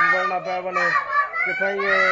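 Children's voices chanting a slogan together in drawn-out, repeated calls.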